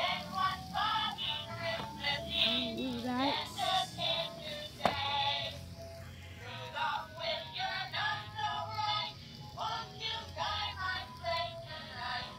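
Animated Rudolph reindeer plush toy playing a recorded song with singing over music while its globe lights up. A single sharp click comes about five seconds in.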